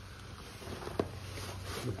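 Faint rustling of a towel and bubble wrap being handled as a wrapped bird is laid down on a bench, with one sharp click about a second in.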